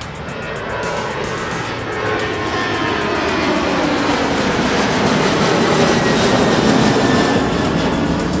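Boeing 737 jet climbing out after takeoff, its engine noise building steadily louder, with a whine that falls in pitch as it passes. Background music with a steady beat plays underneath.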